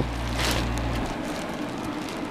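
Woven hoodie fabric rustling as it is handled, over a steady hiss; a low hum stops about a second in.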